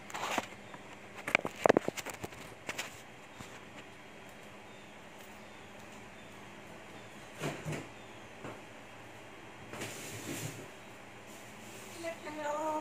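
African grey parrot climbing the bars of a wire cage, its beak and claws knocking and rattling the metal in scattered sharp clicks. They are thickest and loudest in the first three seconds, with a few softer clatters later on.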